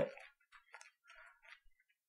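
Faint, scattered light clicks and rustles in a quiet room.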